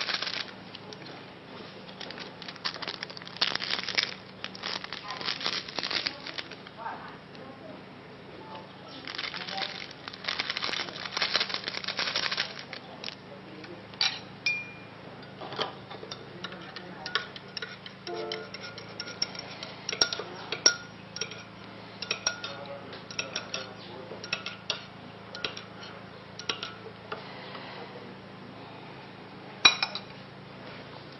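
A paper sachet rustling as it is torn and shaken out over a ceramic mug, in two stretches. Then a metal teaspoon stirring in the mug, with many light clinks against its sides.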